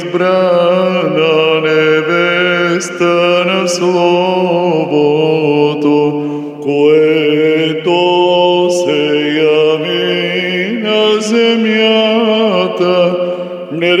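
A man chanting an Orthodox vespers hymn in Bulgarian, drawing each syllable out into long held notes that slowly rise and fall in pitch.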